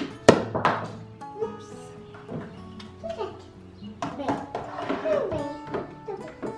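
Light background music with held notes, and a single sharp clack about a third of a second in as metal cutlery knocks against a plastic cutlery tray.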